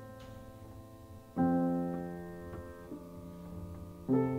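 Steinway grand piano played solo at a slow pace: a chord fades out, then a new chord is struck about a second and a half in and left to ring down, with a few softer notes added under it.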